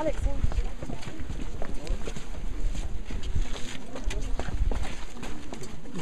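Several people in a group talking at once, with a low rumble of wind on the microphone.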